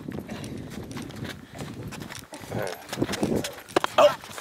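Footsteps on gravelly dirt ground, irregular short clicks with a couple of sharper ones near the end, over faint murmured voices.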